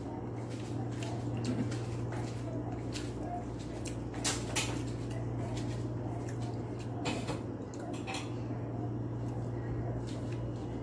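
Light clinks and taps of fingers and food against a stainless steel bowl and a plate as someone eats by hand, the clearest clinks about four and a half seconds in and again around seven and eight seconds. A steady low hum runs underneath.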